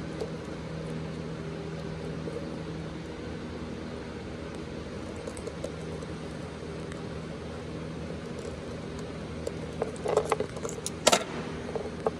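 Steady background hum, then a few small metallic clicks and one sharp snap from a hand wire stripper/crimper working thin wires and terminals near the end.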